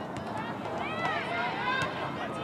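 Several voices calling and shouting across an open playing field, their calls overlapping, with a few sharp clicks in between.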